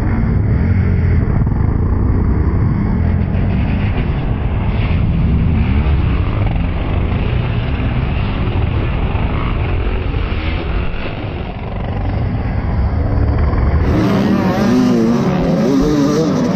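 Motocross dirt bike engines running hard as a pack races off the start, heard from a rider's helmet camera. About 14 s in the sound changes, and engine pitch rises and falls more plainly as a bike is revved.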